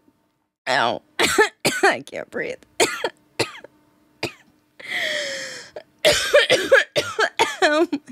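A woman laughing hard in short, broken bursts with swooping pitch, coughing as she laughs, with one long noisy gasping breath about five seconds in.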